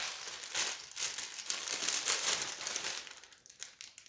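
A clear plastic bag crinkling as it is handled and a sponge is pulled out of it. The crinkling stops about three seconds in.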